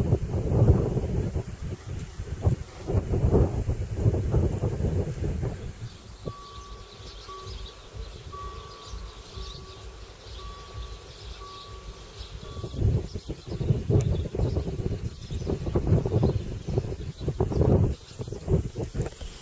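Wind buffeting the microphone in gusts. In a lull from about six to thirteen seconds, a faint high steady tone with short breaks is heard from the level crossing's warning signal while its road lights show red.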